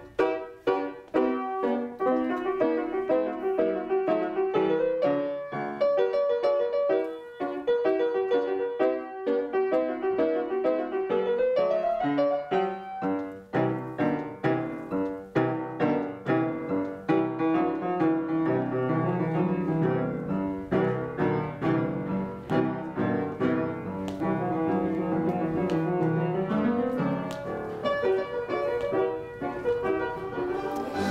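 Grand piano being played: a continuous piece of many quick notes with rising runs, the lower notes growing fuller in the second half.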